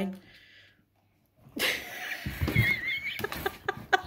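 Labrador puppies scrambling inside a plastic pet transport crate: rustling and scuffling of paws on the bedding and plastic floor, with a short high wavering puppy whine, then a run of quick claw taps near the end.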